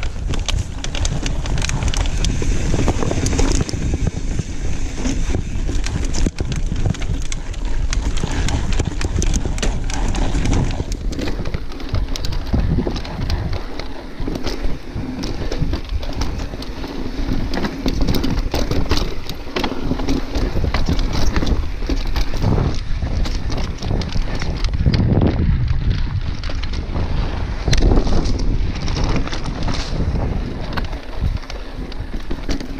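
Mountain bike ridden fast over rocky bedrock trail: a steady rush of wind on the microphone, with constant knocks and rattles from the tyres and bike over the rock.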